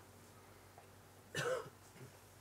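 One short cough about one and a half seconds in, against the quiet of a room.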